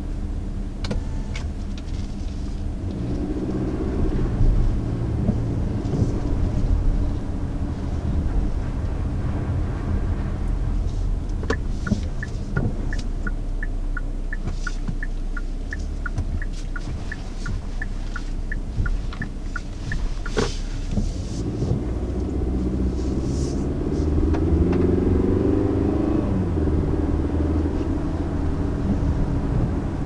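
Cabin sound of a 2019 Hyundai Santa Fe's 2.4-litre naturally aspirated four-cylinder and 8-speed automatic pulling away smoothly, the engine note rising twice under acceleration over a steady road rumble. In the middle the turn-signal indicator ticks about twice a second for about eight seconds, and a single knock follows shortly after it stops.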